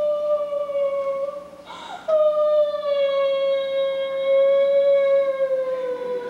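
A soprano voice singing long held notes on stage: one of about two seconds, a quick breath, then one of about four seconds, each sinking slightly in pitch.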